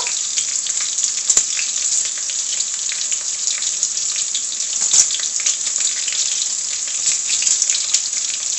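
Sofrito of sweet pepper, onion and tomato frying in oil in a pot: a steady sizzle with two sharper clicks, about a second and about five seconds in.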